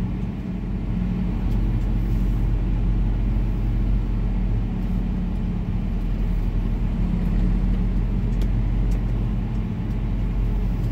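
Semi-truck's diesel engine running, heard from inside the cab at low speed. Its steady low drone grows louder over the first second or so, then holds.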